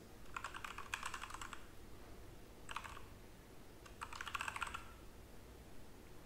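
Faint typing on a computer keyboard: a run of quick keystrokes, a brief second run near the middle, and a third run a little later.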